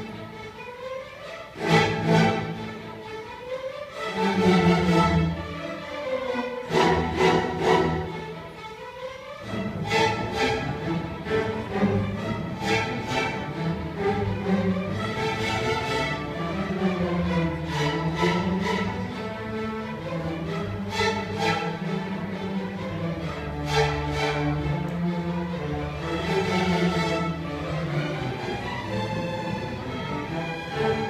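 String orchestra of violins, cellos and double basses playing: several loud, accented chords in the first eight seconds or so, then a sustained, flowing passage.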